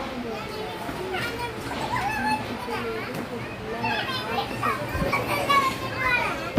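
Children's voices chattering and calling out over one another, with a short thump about five seconds in.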